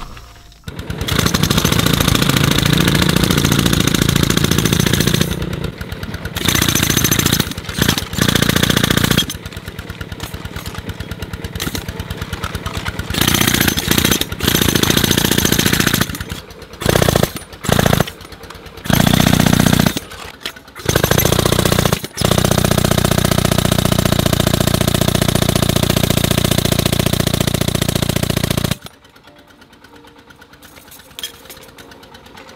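Handheld pneumatic jackhammer, fed by an air hose, hammering into a rock face in repeated bursts of a second to several seconds, the last and longest stopping shortly before the end. In the pauses an engine-driven air compressor keeps running at a lower, even beat.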